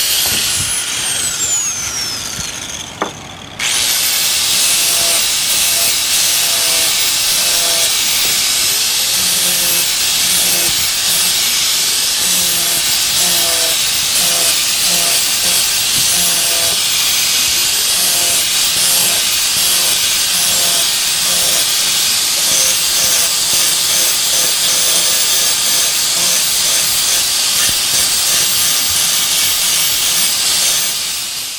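Electric angle grinder smoothing the pointy ridges off a small fiberglass part. At the start the grinder winds down with a falling whine. About three and a half seconds in it is switched back on, spins up quickly, and then grinds steadily with a loud, high hiss.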